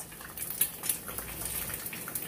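Pot of instant ramen noodles at a rolling boil, bubbling steadily.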